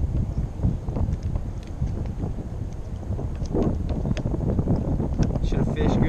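Wind buffeting an action-camera microphone, a steady low rumble, with a few light clicks scattered through it.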